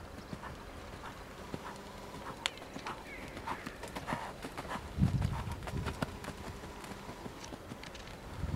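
A horse's hooves cantering on a sand arena surface, a run of soft, irregular thuds and clicks. There is a brief low rumble about five seconds in.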